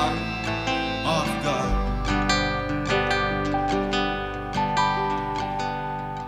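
Live band playing an instrumental passage between sung lines: strummed acoustic guitar over upright bass and drums, with a held note coming in about four and a half seconds in.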